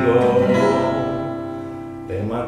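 Acoustic guitar: a few plucked notes, then a chord left ringing and slowly fading away.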